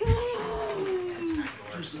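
A domestic cat yowling: one long call that slides steadily down in pitch and fades out after about a second and a half, the cat in a fright at the new puppy.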